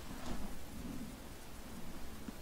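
Faint steady background hiss with a low rumble: room tone and microphone noise, with no distinct sound event.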